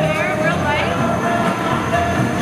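Steady rushing noise of a working glassblowing studio, with voices of nearby people talking over it.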